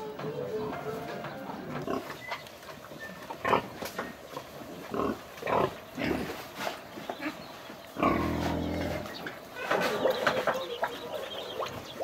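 Domestic pigs grunting in short, scattered calls, with one longer, louder grunt about eight seconds in.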